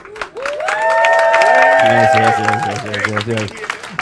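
Audience clapping and cheering, with several people's long held whoops over the clapping.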